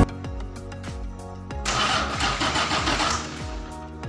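Diesel engine of a Mitsubishi Fuso Fighter mixer truck being started cold after standing unused a long time. A rushing noise swells from before halfway and dies back near the end, under background music with a deep beat.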